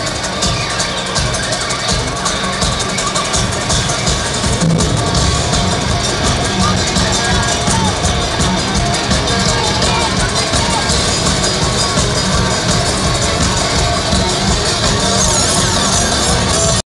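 Live country-rock band, with fiddle and electric guitar over a driving drum beat, playing a fast instrumental break loud through a stadium PA, heard from within the crowd.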